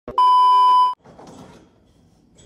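A loud, steady 1 kHz test-tone beep, the edited-in sound effect of a colour-bar 'technical difficulties' screen. It lasts under a second and cuts off sharply, followed by faint rustling.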